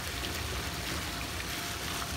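Swimming-pool water sloshing and lapping around people wading in it, a steady watery hiss.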